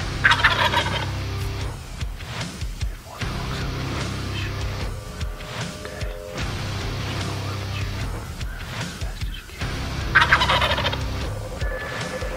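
Wild turkey gobbler gobbling at close range: two loud gobbles, one just after the start and another about ten seconds in.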